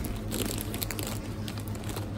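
Plastic crisp bags crinkling as they are handled, an irregular crackle, over a steady low hum.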